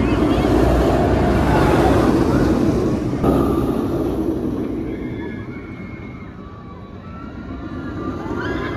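Banshee, a Bolliger & Mabillard inverted roller coaster, with a train running along the steel track overhead: a loud rumble that is strongest in the first three seconds. After a cut the rumble dies down, then builds again near the end as the train comes through the loop.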